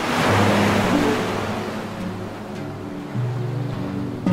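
Slow, calm meditation music with sustained low notes, mixed with the sound of a wave washing in at the start and slowly fading away.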